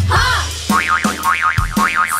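Children's song backing music with a drum beat, overlaid with cartoon sound effects: a springy boing just after the start, then a whistle-like tone warbling rapidly up and down for about a second.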